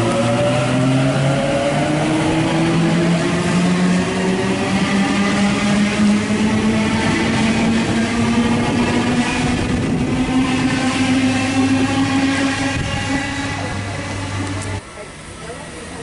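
Sydney Waratah Series 1 double-deck electric train accelerating away from a platform, its traction motors whining in several tones that climb steadily in pitch over a rumble of wheels. The sound drops away suddenly near the end.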